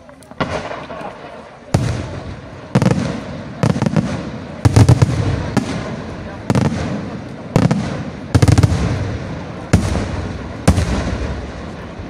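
Aerial firework shells bursting overhead: a string of about a dozen loud bangs, roughly a second apart, each trailing off in a rumbling echo.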